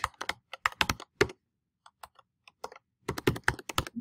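Typing on a computer keyboard: a quick run of keystrokes, a few scattered taps, then another quick run near the end.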